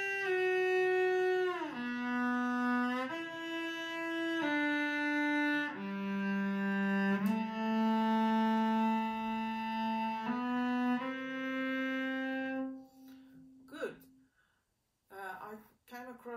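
Cello bowed without vibrato, playing a slow line of long, steady notes, sliding audibly down in pitch between notes about two seconds in and shifting again partway through. The playing stops about thirteen seconds in.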